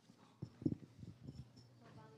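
A few soft low thumps, the loudest about two-thirds of a second in, over faint murmuring voices.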